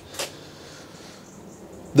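A pause between words: low, steady background hiss, with one brief soft noise just after the start.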